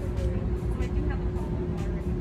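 Indistinct background voices over a steady low rumble and a faint constant hum.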